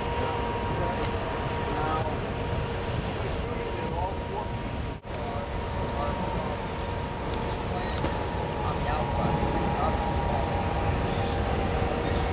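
Steady outdoor background noise: a low rumble with a faint steady whine, and faint indistinct voices. The sound drops out briefly about five seconds in.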